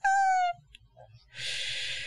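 A woman's laugh ending in a short, high, slightly falling vocal note, then a loud breath drawn in close to the microphone about a second and a half in.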